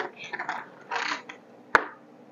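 Wooden coloured pencils rattling and clicking against each other and the tabletop as a hand gropes among them: a few short rattles, then one sharp click about three-quarters of the way through.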